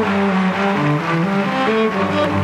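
Cello with a string section playing a slow line of held notes that step from one pitch to the next.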